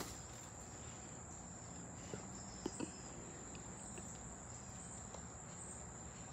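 Steady high-pitched chorus of crickets, with a few soft thumps of bare feet landing on a trampoline mat about two to three seconds in.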